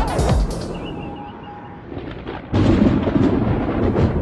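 Electronic intro music that fades out about half a second in, then a quieter gap and a sudden loud low rumble starting just past the middle and carrying on to the end.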